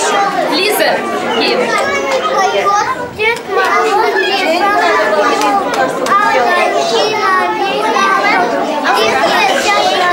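Many young children's voices talking over one another: loud, steady overlapping chatter, with a brief lull about three seconds in.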